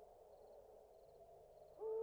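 Faint hiss and hum of an old film soundtrack. Near the end a single low held tone begins, gliding up briefly and then holding steady.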